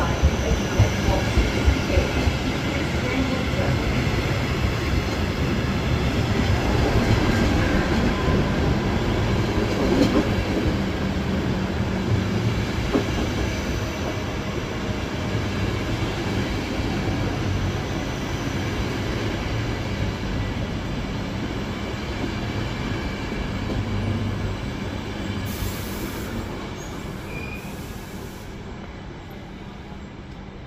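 Nightjet sleeper coaches rolling slowly through the station on arrival, a steady heavy rumble of wheels on rail with a few sharp knocks in the first couple of seconds. The sound slowly fades, most over the last few seconds, as the end of the train moves off down the platform.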